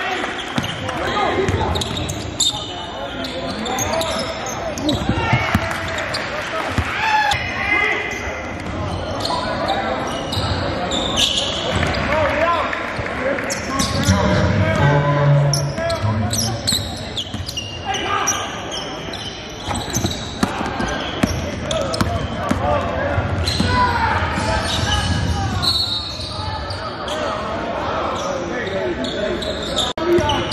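A basketball bouncing on a hardwood gym floor during play, the bounces ringing in a large gym. Indistinct voices of players and spectators run throughout.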